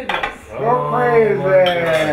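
Dishes and cutlery clinking around a dinner table as food is passed and served. From about half a second in, a long drawn-out voice sounds over it and is the loudest thing heard.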